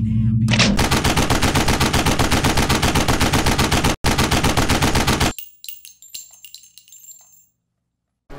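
Sound effect of rapid automatic gunfire, roughly ten shots a second, starting just under a second in and cutting off after about five seconds. It is followed by a few scattered clicks and faint high rings that fade out.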